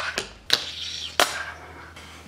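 A fingerboard clacking against the tabletop and a small ledge as it is flicked and landed by fingers: three sharp clacks, at the start, about half a second in and just past a second in.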